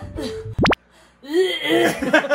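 A quick comedy sound effect sweeping sharply upward in pitch about half a second in. After a brief near-silence comes a drawn-out 'oeeee' gagging voice of disgust.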